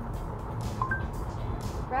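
Steady road and tyre rumble inside the cabin of a Chevy Bolt EUV electric car while driving. About a second in, a short two-note rising electronic chime from the voice assistant acknowledges a spoken request.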